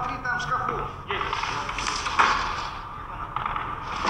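A voice briefly at the start, then rustling and shuffling noise with a single knock about two seconds in.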